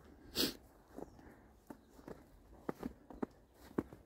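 A short sniff near the start, then faint, irregular footsteps on snow as the person with the camera walks up to the car.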